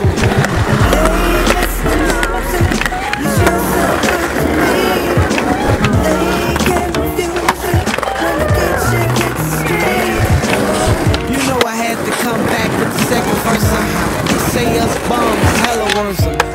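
Hip-hop track with rap vocals, with skateboard sounds mixed in: urethane wheels rolling and the board knocking against concrete curbs.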